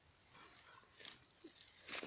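Near silence, with a few faint, brief rustles about a second in and again near the end.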